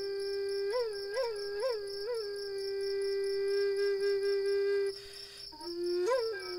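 Music: a flute plays a low note with several quick upward flicks, then holds one long note that breaks off briefly near the end. Under it runs a steady, high, pulsing trill of crickets.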